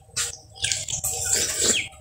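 Wet, juicy biting, chewing and slurping of ripe watermelon in short irregular bursts, with a brief squeaky suck near the end.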